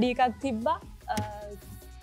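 A few short spoken syllables with pauses between them, over a steady low electrical hum.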